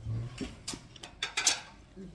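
Raw black rice being eaten with a metal spoon: a run of sharp crunches and clicks, the loudest about one and a half seconds in.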